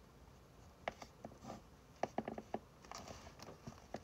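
Pen writing on paper: short, irregular scratches and taps, starting about a second in and busiest in the middle.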